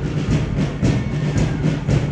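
Drum beating a steady marching rhythm, about two beats a second.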